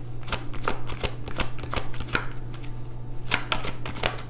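A tarot deck being shuffled by hand: a run of quick, irregular card flicks and slaps over a steady low hum.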